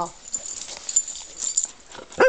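A rough collie moving right up to the camera: scattered light clicks and rustles, with its fur brushing against the microphone near the end.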